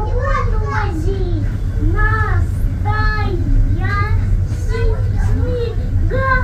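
Children's voices chattering and calling out in short high-pitched phrases, over a steady low rumble inside a train.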